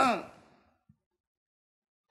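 A man's voice trailing off with a falling pitch in the first half-second, then complete silence.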